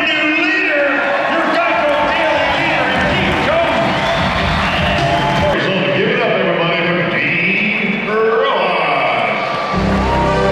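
A man's voice talking over an arena public-address system, with music playing underneath and a heavier bass line coming in near the end.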